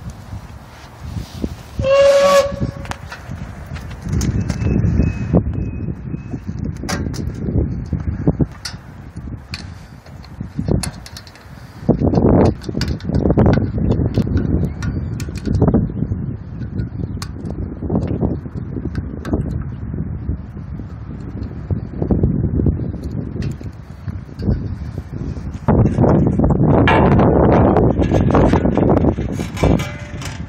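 Handling noise as a replacement condenser fan motor is worked onto its wire fan guard and its leads fed through the grille: irregular rustles, scrapes and light metal clicks and knocks. A brief whistle-like tone sounds about two seconds in, and the noise is loudest near the end.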